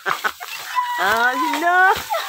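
A rooster crowing in the second half: a held note followed by rising, bending calls.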